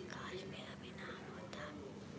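A person's faint whispered speech.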